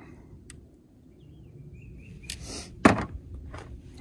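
Handling of a small plastic expansion clip and screw: light clicks, with one sharp, loud click about three seconds in.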